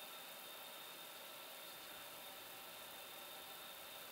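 Faint, steady hiss of airliner flight-deck ventilation and avionics cooling, with a thin high whine held at one pitch.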